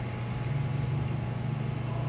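Hot air rework station blowing: a steady low hum from its blower with a faint airy hiss, as a tiny surface-mount component is heated off a laptop motherboard.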